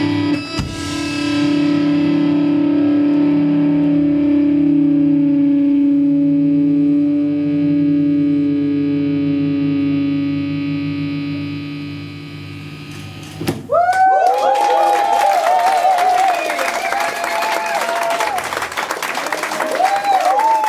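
Live rock band with distorted electric guitar, bass and drums hitting a final chord and letting it ring and slowly fade. About thirteen seconds in, an electric guitar through effects breaks in with high notes bending up and down.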